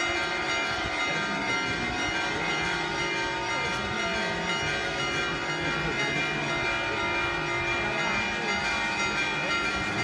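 Church bells ringing continuously, many overlapping tones holding steady without a break.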